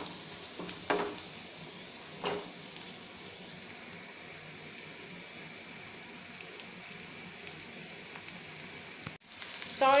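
Potatoes and onions frying in oil in a non-stick pan, with a steady sizzle. A wooden spatula stirs the pan twice in the first few seconds. The sound drops out briefly near the end.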